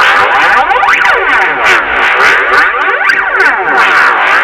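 Cartoon audio run through stacked 'G major'-style effects: a loud, continuous wash of many overlapping tones sweeping up and down in repeated fan-shaped patterns.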